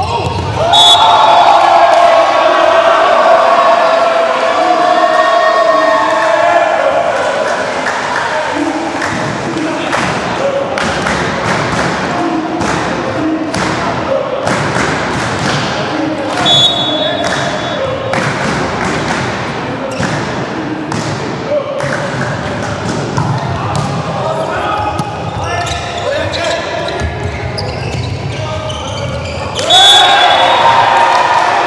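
Indoor volleyball match sound in a large echoing hall: a referee's whistle blows, then voices shout and cheer for several seconds. A volleyball is bounced repeatedly on the court floor and struck, with the whistle again midway and at the end.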